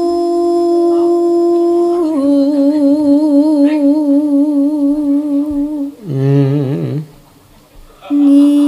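Javanese singing: one voice holds long, drawn-out notes with a slow wavering vibrato, stepping down in pitch about two seconds in. About six seconds in, a lower voice sings a short wavering phrase.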